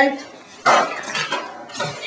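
Harsh shouted voices in two rough bursts, the first about two-thirds of a second in and the second near the end.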